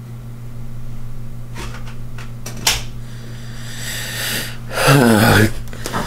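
Steady low hum of a fan in a small room. A click comes about two and a half seconds in. Near the end a person draws a breath and lets out a short groan that falls in pitch, the loudest sound here.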